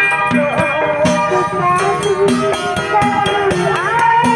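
Street procession music from a percussion band: gongs, drums and a cymbal play quick strokes under a melody that slides between notes.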